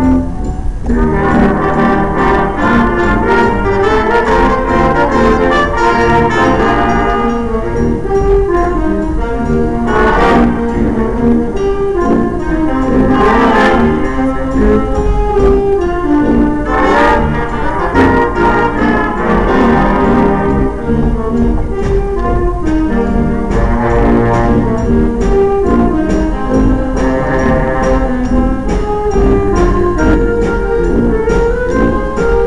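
Middle-school jazz band playing live, the horns to the fore over the rhythm section. A few sharp hits cut through, about ten seconds in and again near thirteen and seventeen seconds.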